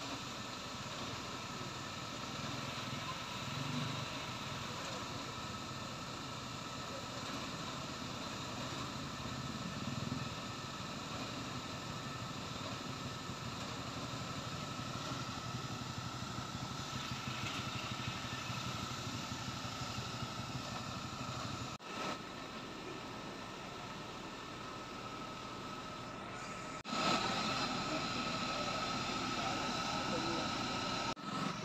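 Fire engine running steadily to drive its water pump, with hoses charged, a constant high whine and a low rumble. The sound cuts off abruptly twice and is louder over the last few seconds.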